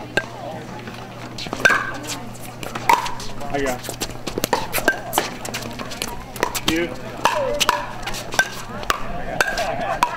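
Pickleball paddles hitting a plastic pickleball back and forth in a doubles rally: a string of sharp, short hits spaced roughly half a second to a second apart, with voices in the background.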